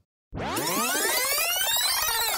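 Synthesized transition sound effect: a dense cluster of tones gliding up together and then back down, starting about a third of a second in.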